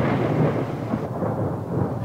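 Steady low rumbling noise of wind on the microphone, easing a little in its upper range after about a second.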